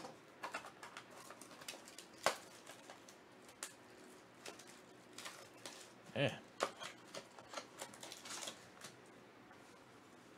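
Tough plastic shrink wrap and a foil wrapper being torn off a trading-card box by hand: scattered sharp crinkles and crackles, with a louder rustle about six seconds in.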